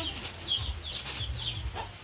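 Domestic chickens calling with short, high peeps, several in a row, with a brief rustle near the middle.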